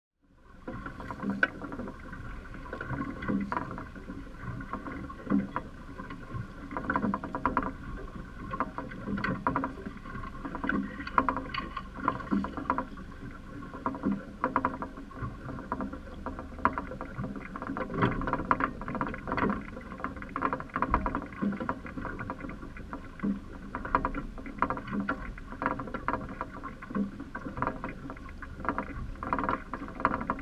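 Small boat afloat on choppy sea: water slapping and knocking irregularly against the hull over a steady hum. It fades in over the first second.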